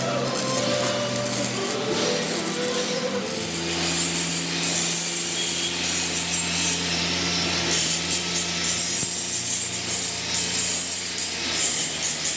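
Arc welding on steel grating for the first few seconds, then a handheld angle grinder grinding the edges of welded steel grating, a steady motor whir with a grinding rasp from about three seconds in.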